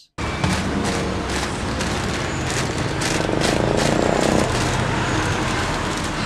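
Street ambience dominated by road traffic: a steady wash of passing vehicles that starts abruptly just after the beginning, swelling a little between about three and four and a half seconds in as one vehicle passes closer.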